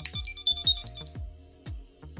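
LG Tone Free FN6 earbuds sounding their Find My Earbuds locator alert: a quick run of short, high electronic beeps that stops about a second in.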